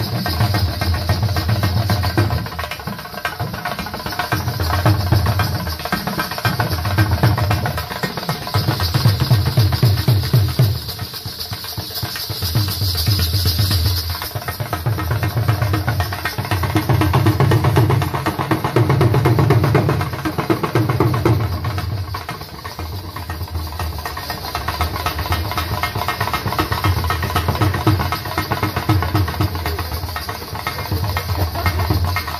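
Dhol drumming: a fast, unbroken beat with deep bass strokes, swelling louder and dropping back several times.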